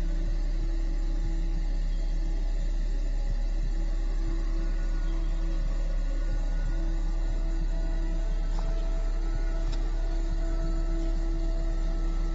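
Dark ambient film-score drone: a deep, steady rumble with a few held tones above it that fade out and come back.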